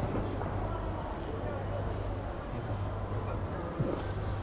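Indoor train-station ambience: a steady low hum under a faint, even wash of background noise.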